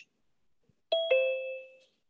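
A two-note electronic notification chime, a higher note followed at once by a lower one that rings on and fades out, about a second in.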